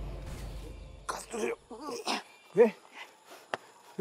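Background music fades out over the first second, then a man's voice makes a few short vocal sounds, grunts or throat-clearing noises, with a sharp click near the end.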